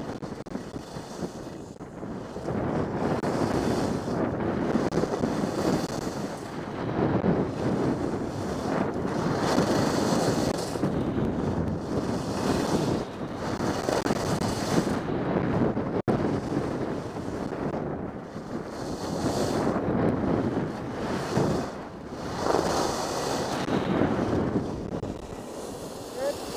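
Skis running on groomed snow with wind rushing over the microphone of a camera worn by the skier. The noise swells and fades every couple of seconds.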